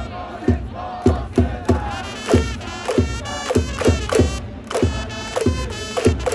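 Stadium crowd of baseball fans chanting a player's cheer song in unison, backed by trumpets, over a steady drum beat of about three per second.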